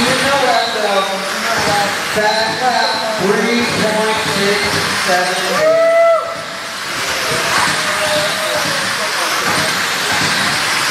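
Radio-controlled sprint cars racing on a dirt oval, their motors whining up and down in pitch as the cars accelerate and pass. Voices talk in the background, and one held whine about six seconds in cuts off suddenly.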